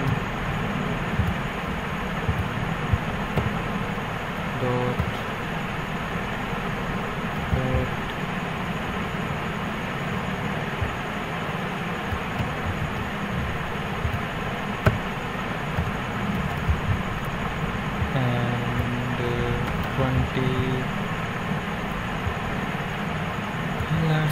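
Steady background noise picked up by the microphone, with a few brief pitched sounds about five and eight seconds in and again near the end, and faint computer keyboard clicks.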